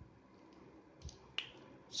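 Quiet room tone broken by a single sharp click about one and a half seconds in, with a fainter tick just before it.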